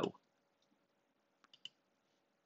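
Three quick, faint computer mouse clicks about one and a half seconds in, otherwise near silence.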